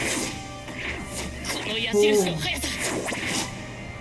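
Anime fight-scene soundtrack: music under a run of swishes and hits, the loudest hit about two seconds in, with a voice heard briefly.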